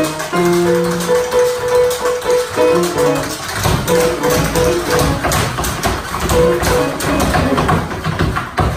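Improvised duet of grand piano and tap dance: piano notes ring over quick tap-shoe strikes on a wooden board. The tapping grows denser and heavier about halfway through.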